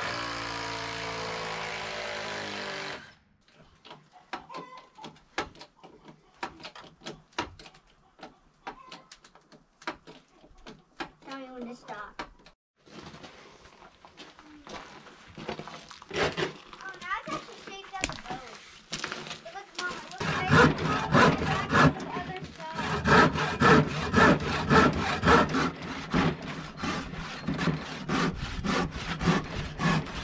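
Handsaw cutting through a wooden board, with steady back-and-forth strokes about two a second through the last third, after scattered knocks of tools and wood being handled.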